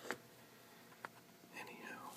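Faint handling sounds: a sharp click just after the start and a smaller one about a second in, then a brief soft whisper near the end.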